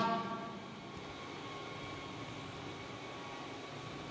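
Faint, steady background noise of a room, with the echo of a voice dying away in the first half second.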